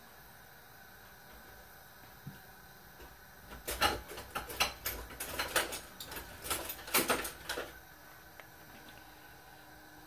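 Light clicks and rattles from handling a plastic spice shaker with a flip-top cap: an irregular run of them lasting about four seconds in the middle.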